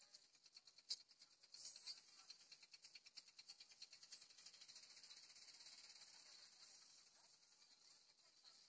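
Near silence: a faint high-pitched hiss with rapid faint ticking.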